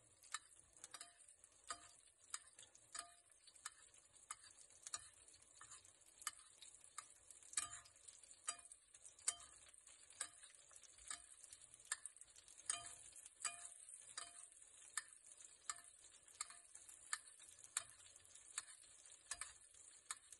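Metal spoon clicking and scraping against a stainless steel frying pan, about one or two clicks a second, as melted butter is spooned over a steak. A faint steady sizzle of the butter frying runs underneath.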